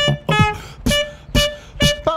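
Saxophone and human beatbox playing a dance groove: the sax plays short repeated notes on one pitch about every half second, over beatboxed kick and snare sounds.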